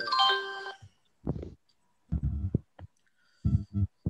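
A short electronic notification chime of several tones sounding together, from the quiz software as its results box pops up, followed by three brief low sounds.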